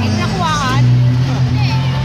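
Live music over a PA in a large hall, with a steady low chord held throughout. A single voice with a wavering pitch rises over it for about half a second early on.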